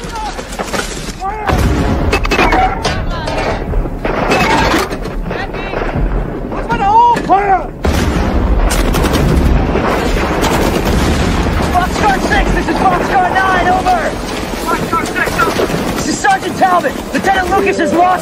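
Film battle soundtrack: repeated gunfire and heavy booms, with men shouting over the fighting. The heaviest booms come about one and a half seconds and eight seconds in.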